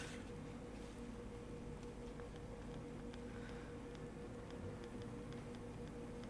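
Quiet room tone: a faint steady hum, with a few very faint light ticks in the second half.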